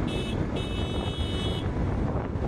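Wind rushing over the microphone on top of the steady engine and road noise of a moving motorcycle. A high-pitched tone sounds twice over it, briefly near the start and then for about a second.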